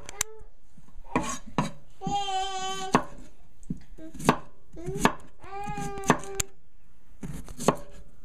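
Chef's knife slicing raw Jerusalem artichoke tubers on a wooden cutting board: about ten sharp, irregularly spaced cuts striking the board. A brief wordless voice sounds twice, about two seconds in and again near six seconds.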